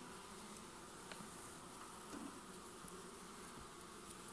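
Honeybees buzzing in an open hive: a faint, steady hum from the colony.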